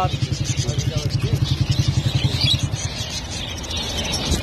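An engine running close by with a fast, even low pulse that cuts out about three seconds in, with zebra finches chirping over it.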